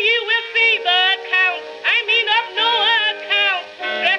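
A female contralto singing a blues with orchestra accompaniment, played from a 1922 Okeh 78 rpm acoustic-era record. The sound is thin, with no deep bass or high treble, and the held notes waver with a wide vibrato.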